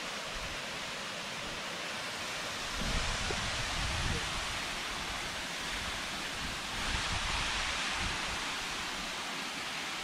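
Waterfall, a steady rushing of water, with wind on the microphone adding low gusts about three seconds in and again near seven seconds.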